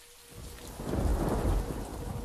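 A deep rolling rumble that swells to its loudest about a second in and then slowly fades, over a steady hiss, with a faint held tone underneath.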